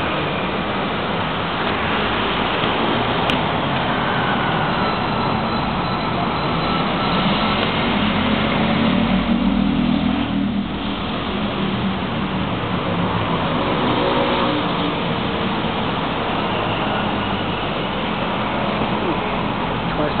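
Steady city street traffic noise from cars driving past, with one vehicle passing more loudly about eight to eleven seconds in.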